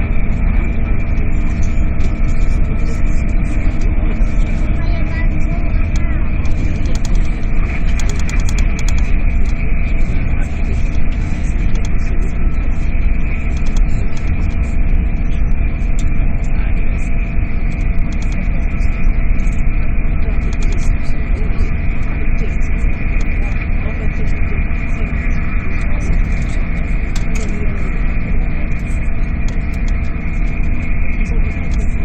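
Steady running rumble inside the cabin of an SJ X2000 high-speed train at speed, with a few constant hums over it.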